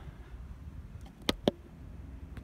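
Two short, sharp clicks about a fifth of a second apart, a little past the middle, over a low rumble.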